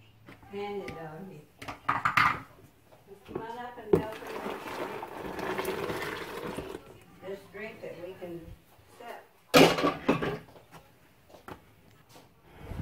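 Blended fruit drink poured from a blender jar into a plastic pitcher. A sharp knock comes as the pour starts, then liquid splashes and rushes steadily for about three seconds.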